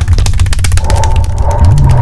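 Loud dramatic film sound design in the background score: a deep rumble under a rapid run of clicks, with a steady high tone coming in about a second in.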